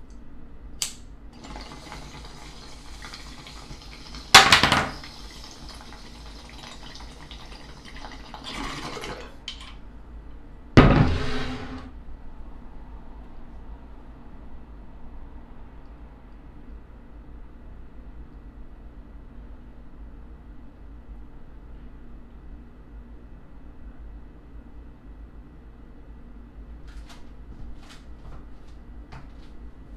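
Water bubbling in a glass bong as a hit is drawn through it for about eight seconds, broken by two loud sudden sounds about four and eleven seconds in. Under it and after it runs a steady low hum from a large vehicle left running on the street.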